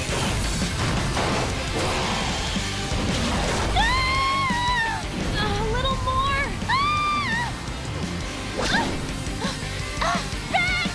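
Cartoon action soundtrack: background music under crash and impact sound effects as giant robots grapple. About halfway through come three held high tones, each rising then falling.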